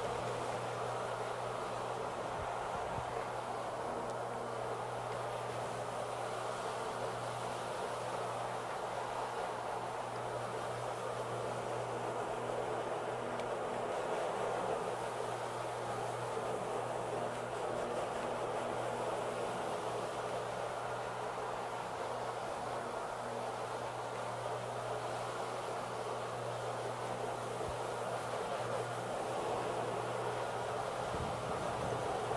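Cimex Cyclone R48 triple-brush rotary carpet machine running steadily, its motor humming under the even scrubbing noise of its brushes turning on the carpet.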